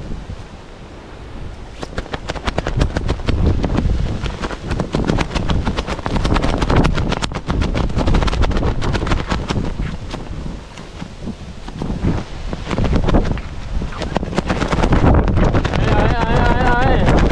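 Gusty typhoon wind buffeting the microphone, loud and crackling, swelling and easing in gusts with lulls about a second in and again around eleven seconds.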